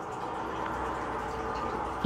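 Steady background noise: a low hum with a faint hiss, no distinct events.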